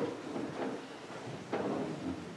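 Slow footsteps on a hard floor in a reverberant hall, about one step a second, two of them here, each with a short ringing tail.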